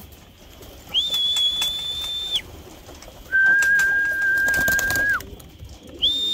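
Two long, steady whistled notes, the first high and the second lower, calling racing pigeons in to the loft to be fed. Faint clicks sound alongside the notes.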